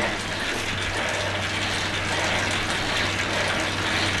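Road bike on an indoor trainer whirring steadily under hard pedalling, its drivetrain and resistance unit giving an even rushing noise over a low hum.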